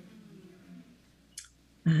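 A brief pause in a woman's speech over a small-room call microphone: her voice trails off, one short sharp click comes about a second and a half in, and she starts speaking again right at the end.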